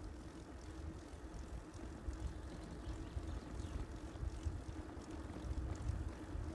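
Wind buffeting the microphone of a camera riding on a moving bicycle, with the tyres rolling on asphalt: a steady low rumble with a faint constant hum.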